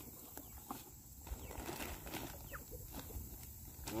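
Faint handling of a sealed plastic bag of dried larvae, with a few light ticks and rustles as it is lifted out of a cardboard box. A brief faint bird chirp comes about two and a half seconds in.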